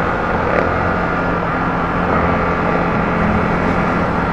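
Yamaha Sniper 155 VVA's single-cylinder four-stroke engine running at a steady cruise while the bike is ridden, mixed with steady wind and road noise.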